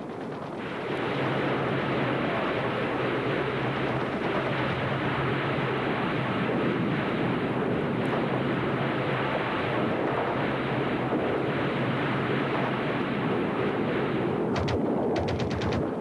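Loud, steady rushing roar of rockets being fired in battle, followed near the end by a quick rattle of machine-gun shots.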